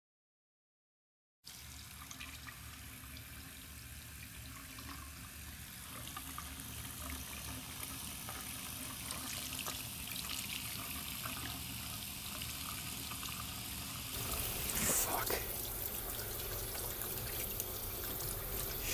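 Steady rush of running water, like a tap running into a sink. It starts after about a second and a half of silence, grows slowly louder, and turns louder and rougher near the end.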